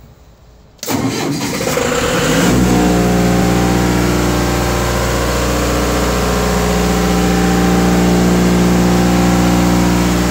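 A 30 kW stationary generator's engine cranked on its starter a little under a second in, catching about two seconds later and then running steadily.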